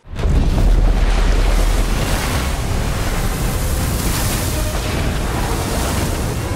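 Loud soundtrack interlude: a deep rumble under a dense wash of noise that starts abruptly and holds steady.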